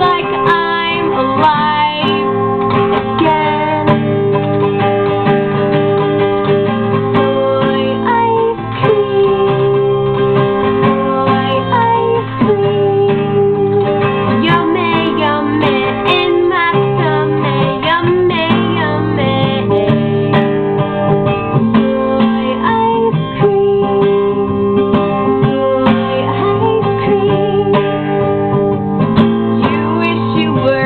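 A woman singing while strumming an acoustic guitar, her voice over steady strummed chords.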